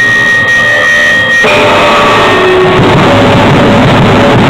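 Live rock band of electric guitar and drum kit playing loud, dense, noisy music. A held high tone runs through it and cuts off about a second and a half in.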